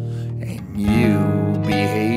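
Acoustic guitar music: a chord rings on, then a new chord is strummed just under a second in, with a wavering melody line above it.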